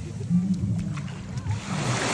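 Small waves washing up the sand at the shoreline, the hiss of a wave building near the end, over a steady low rumble of wind on the microphone.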